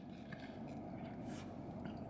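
Quiet car-cabin hum with a few faint soft ticks and scrapes as a plastic fork picks chili cheese fries out of a foam takeout container, with chewing.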